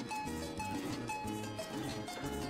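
Background music, moderately quiet, with short held notes over a low bass line.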